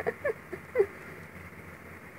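A woman's two short soft laughs in the first second, then quiet room tone.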